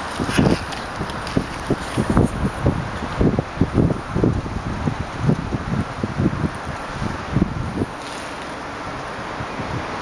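Wind buffeting the microphone in irregular low gusts, settling to a steadier rush near the end.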